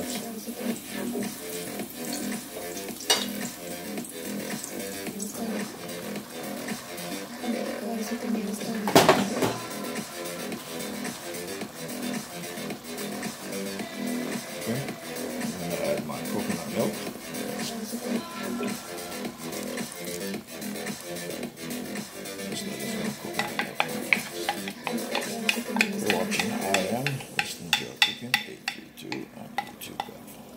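Background music over kitchen sounds: oil sizzling with garlic and scallion in a steel pot, and a sharp clatter about nine seconds in. In the last few seconds a wooden spoon stirs black beans in liquid in a pan, with many quick taps against the pan.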